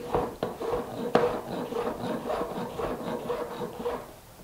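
Chef's knife slicing zucchini into chunks on a plastic cutting board: an irregular run of knocks as the blade goes through the flesh and taps the board, several a second, the sharpest about a second in.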